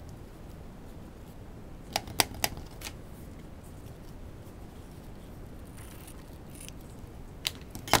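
Metal scissors snipping crinkle ribbon: sharp clicks, a quick cluster about two seconds in and two more near the end.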